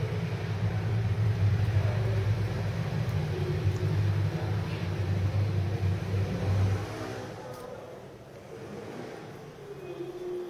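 A low, steady mechanical hum or drone that drops away about seven seconds in.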